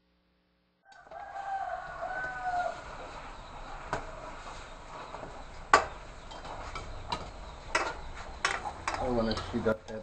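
A rooster crows once, starting about a second in and lasting a second and a half, over a steady background hiss. Scattered sharp clicks and knocks follow through the rest.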